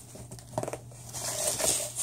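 Plastic bubble wrap being pulled out of a packing box and handled, crinkling and rustling, louder near the end.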